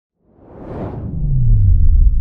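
Logo-reveal sound effect: a whoosh swells up out of silence, then a deep bass tone slides down in pitch and settles into a low, sustained rumble.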